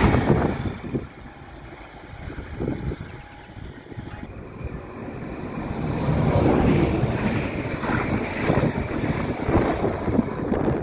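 Electric regional multiple-unit trains (Süwex Stadler FLIRT units) passing. One train rushes by and drops away within the first second. Another approaches, growing louder from about five seconds in, with wind buffeting the microphone throughout.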